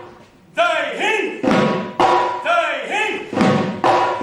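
Assamese dhol drums being struck in a rhythmic solo: after a short lull at the start, a run of strokes whose tones bend up and down in pitch, then a denser run of strokes near the end.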